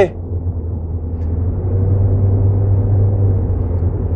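A steady low rumble with faint held tones above it, unchanging through the pause.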